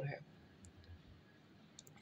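Near silence after a spoken word, broken by a couple of faint, short clicks near the end.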